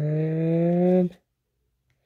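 A man's voice holding one long, wordless note, like a drawn-out "mmm" or hum, for over a second. The pitch rises slowly, then it stops about a second in.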